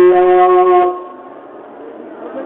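A man's voice holding one long, loud chanted note at a steady pitch through the loudspeakers, cutting off about a second in and leaving a faint hall murmur.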